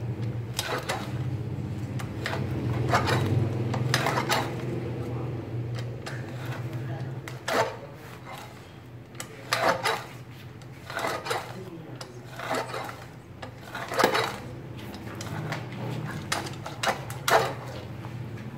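Lever-arm guillotine herb cutter slicing a dried Phellinus (nấm thượng hoàng) mushroom cap into thin strips. Each stroke gives a short, sharp cut as the steel blade chops through and meets the wooden board, repeated irregularly about once a second.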